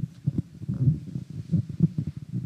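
Low, muffled irregular thumps and rumbles of a microphone being handled.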